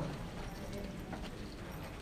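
Quiet church hall room tone during a pause in the sermon, with a steady low hum and a few faint clicks.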